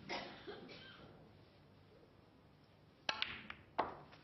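Snooker balls clicking as a shot is played to pot a red: a sharp click about three seconds in, a few lighter ticks, then a second sharp click under a second later.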